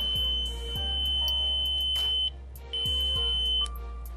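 Electronic magnetic pole detector giving a steady high-pitched beep as it is held over the magnets. The tone cuts out a little past halfway, sounds again for about a second, then stops, with soft background music under it.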